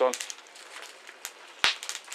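Fire crackling quietly in a tent stove, with a few faint pops and one sharp, louder crack near the end.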